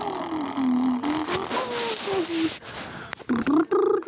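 A person's voice making drawn-out, raspy wordless sounds that slide up and down in pitch, with a few short louder bursts near the end.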